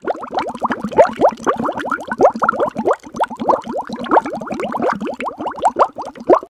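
Bubbling, gurgling liquid: a dense run of short rising plops, several a second, starting abruptly out of silence.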